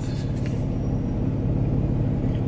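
Car engine idling, heard as a steady low rumble from inside the cabin.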